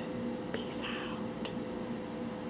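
A woman whispering softly close to the microphone, a few short hissy sounds between louder sentences, over a faint steady hum.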